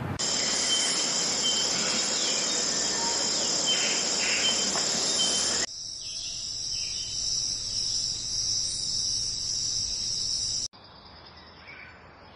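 Insects chirping in a steady high-pitched chorus. The sound changes abruptly about halfway through and drops much quieter near the end.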